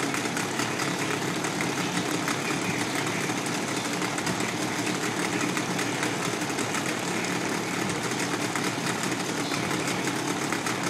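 A 1984 Mariner 25 outboard, a Yamaha 25E two-stroke twin, running steadily with its lower unit in a test tub of water. It was bought as a non-running motor and now runs.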